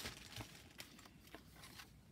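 Faint rustling and a few light taps of paper cuttings and card pieces being handled and laid down on a table.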